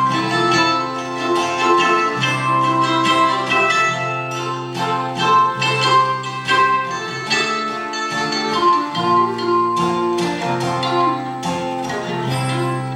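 Instrumental break on acoustic guitar and mandolin: plucked, ringing notes over steady guitar chords, with no singing.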